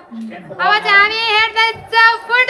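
A child singing or chanting in a high voice, with a wavering, sliding pitch held over long notes. It starts about half a second in.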